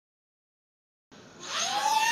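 Silence for about the first second, then the whine of a small FPV racing quadcopter's electric motors starts and grows louder, its pitch rising and then beginning to fall.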